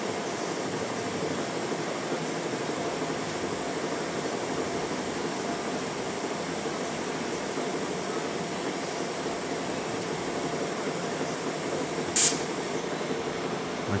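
A DC TIG welding arc on mild steel running quietly, a steady soft hiss with a faint hum, with a brief sharp hiss about twelve seconds in.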